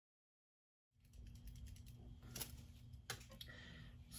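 Dead silence for about the first second, then faint room hum with a few soft clicks and rustles.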